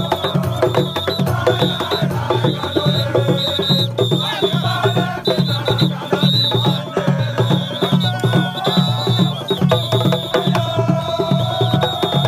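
Traditional Mandinka music: fast, dense drumming with a steady beat and a melody over it.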